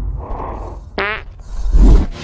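Cinematic sound effects: a short pitched blurt about a second in, then a loud, deep boom just before the end.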